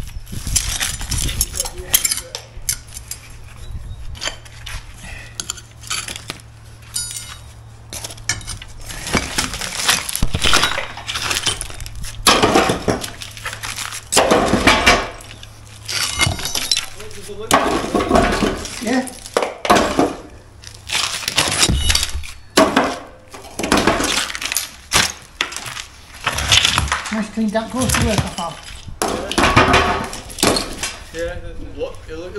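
Steel wrecking bar prying old bricks off a course bedded in hard 3-to-1 sand-cement mortar: irregular sharp clinks of steel on brick, scraping, and brick and mortar pieces breaking loose and clattering.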